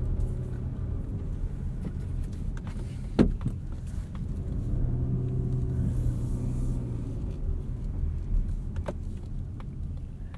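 2020 Mazda CX-30's 2.5-litre four-cylinder engine heard from inside the cabin as the car pulls away and gently accelerates, a low steady rumble that swells in its engine note about five to seven seconds in. A sharp click comes about three seconds in, and a softer one near the end.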